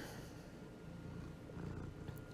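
A faint, steady low rumble.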